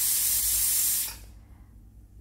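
Pressure cooker hissing: a loud burst of steam that starts suddenly, holds for about a second and then dies away.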